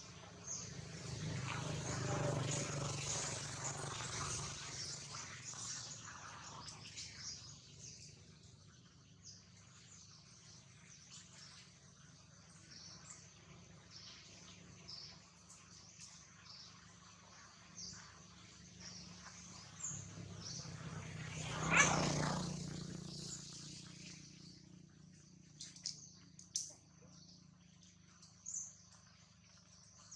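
Outdoor ambience with small birds chirping throughout. A louder swell of rushing noise fills the first few seconds, and a brief loud rush rises and falls about two-thirds of the way through.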